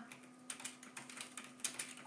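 Quiet typing on a computer keyboard: a run of irregular key clicks, with a faint steady hum underneath.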